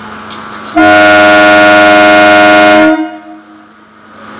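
An EMU local train's horn sounding one very loud, steady blast of about two seconds, starting about a second in and cutting off sharply, with a short fading echo after.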